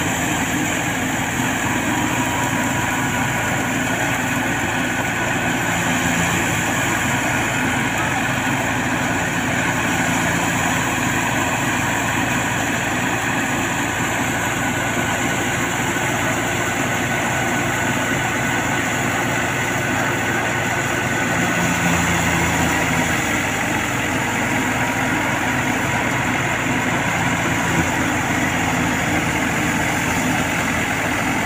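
Tractor-driven wheat thresher running steadily while threshing, a loud continuous mechanical din of the machine and the tractor engine that powers it.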